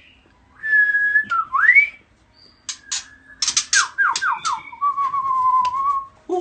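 A shama singing a whistled song. It gives a clear held note, then a rising slur, a few sharp clicks, a quick run of four or five falling notes, and finally a long, steady, lower whistle.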